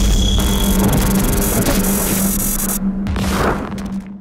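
Cinematic logo-reveal sting: a deep boom with a falling low sweep, then a dense noisy whoosh over a steady low drone. The hiss drops away about three seconds in, then swells once more briefly.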